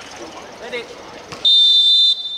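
Referee's whistle: one long, steady, shrill blast starting about one and a half seconds in, signalling the kick-off to restart play.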